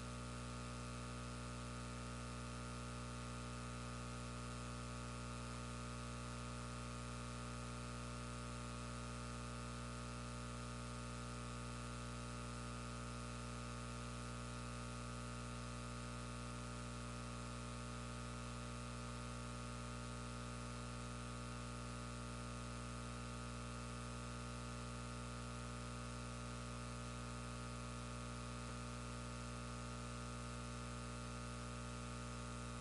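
Steady electrical mains hum and buzz with a stack of fixed overtones over an even hiss, unchanging throughout, with no voices coming through. This is the sign of the audio feed's signal having dropped out, leaving only the sound system's hum.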